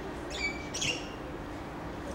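A bird calling twice in quick succession, two short high chirps about half a second apart, over distant outdoor background noise.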